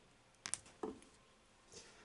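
Faint handling sounds of a small metal screw and plastic display-stand parts: a couple of sharp clicks about half a second in, a softer tap just under a second in, and a faint rustle near the end.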